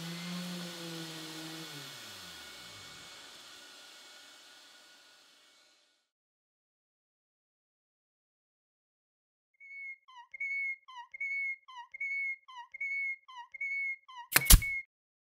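A steady motor-like hum that drops in pitch about two seconds in and fades out over the next few seconds, then silence. From near the ten-second mark comes a run of short, high, whistle-like squeaks, about one every 0.6 s.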